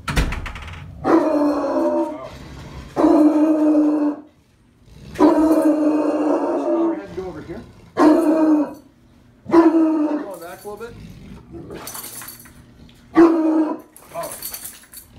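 Bloodhound barking and baying at a stranger: about six deep, drawn-out calls, each up to a second long, with pauses between them, a protective reaction to a new person coming in. A sharp thump right at the start.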